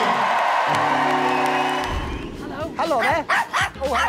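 Audience applause and cheering, fading out about halfway. Then a small dog, a Yorkshire terrier, yaps repeatedly in quick, high-pitched bursts over background music.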